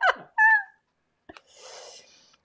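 A woman's laughter trailing off into a brief high hum, followed by a single light click and a soft rustle near the end.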